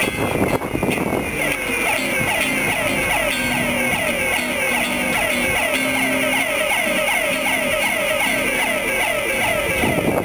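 Electric guitar run through delay and looper pedals, worked by hand to make an effect: a short falling swoop that repeats about three times a second, over a low note that comes and goes.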